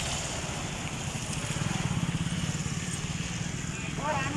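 A small engine running with a low, fast-pulsing rumble that swells around two seconds in and then eases.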